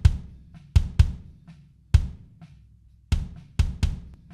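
Playback of a live drum kit recording, kick and snare hits at an unhurried groove, with a one-shot kick sample from Cubase's sampler track layered on the kick. The sample's polarity is flipped between 180° and 0° during playback to check which way it blends better with the original kick.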